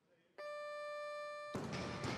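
Weightlifting competition down-signal buzzer: one steady electronic tone lasting about a second, signalling a completed lift and telling the lifter to lower the bar. About a second and a half in, a loud burst of noise from the hall cuts in, typical of crowd applause.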